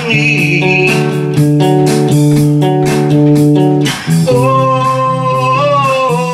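Acoustic guitar playing sustained notes that change in steps, joined after about four seconds by a held, wordless sung line that bends in pitch.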